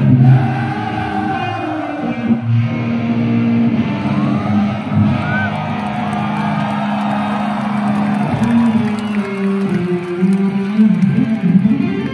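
Live electric guitar solo through a stage amplifier, with long sustained notes and pitch bends, over crowd noise from a concert audience.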